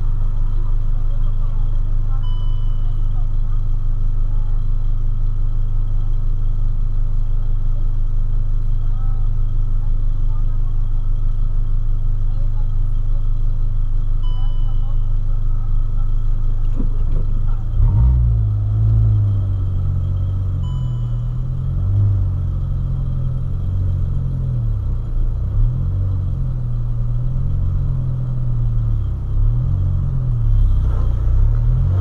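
Volkswagen Polo 1.6 engine idling steadily, heard from inside the cabin while the car stands still. About eighteen seconds in the low rumble turns uneven and wavering.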